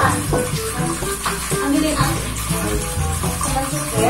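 Kitchen tap running steadily into a sink, with background music playing over it.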